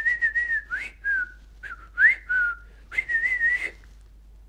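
A man whistling through pursed lips: a clear tone in four short phrases, some sliding up or down and the last one wavering. It imitates a whistle meant to call a bird.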